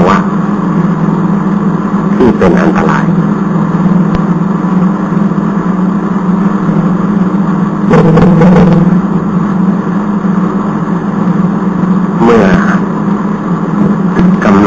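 A loud, steady low hum that runs without a break, with three brief snatches of a voice: about two, eight and twelve seconds in.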